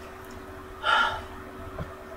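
A woman's single short, audible breath, heard as a gasp, about a second in.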